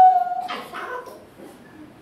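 A man's voice holding a high, drawn-out note over the hall's microphones, which fades out about half a second in. Faint room sound follows.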